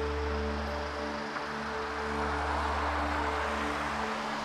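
Soft background music: long held notes over a steady low tone.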